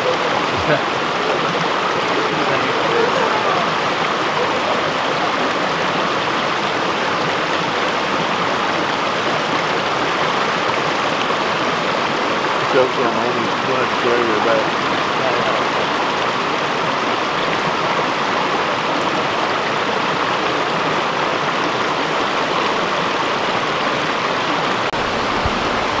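A shallow, rocky creek running over and between stones: a steady rush of flowing water.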